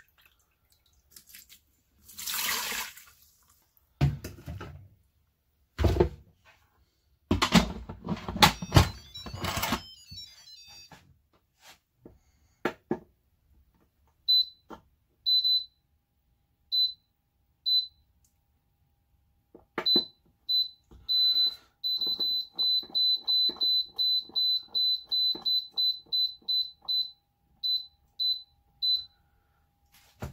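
Electric pressure cooker being closed and programmed: first scattered knocks and clatters as the lid is fitted, then the control panel beeps at each button press. A few spaced beeps are followed by a fast run of about two beeps a second as the cook time is set to fifteen minutes.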